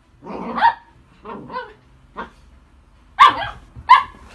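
Italian greyhound giving about five short, sharp barks in excited play, the loudest about half a second in and a little after three seconds.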